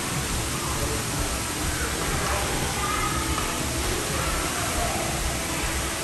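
Steady wash of running water echoing through an indoor pool hall, with faint distant voices.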